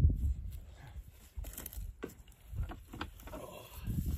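Footsteps on dry, rocky dirt and a few sharp knocks as an elk shed antler is carried and set against a pack loaded with antlers, over low wind rumble on the microphone.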